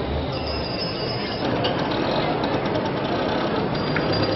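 Busy street ambience: a steady wash of traffic and crowd noise, with a thin high whine near the start and again near the end.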